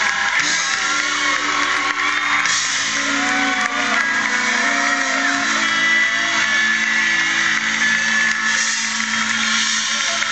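Live rock band playing electric guitars, recorded from within the audience, loud and steady, with a dense noisy haze of crowd sound over the music.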